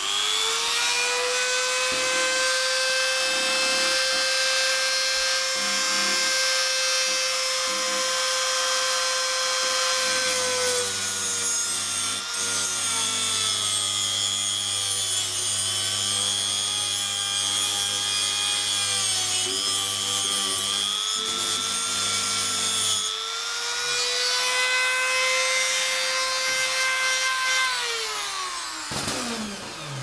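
Handheld rotary tool (Dremel-type) with a small abrasive cut-off disc, running with a high whine and cutting a slot into the head of a stripped cross-head screw so that a flat screwdriver can turn it. From about ten seconds in to about twenty-three seconds the pitch drops and wavers as the disc bites into the metal. It rises again when the disc is lifted, and the tool winds down near the end.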